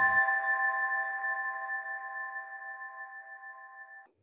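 The last chord of a channel intro jingle: several steady tones held together, slowly fading away and cut off at the end.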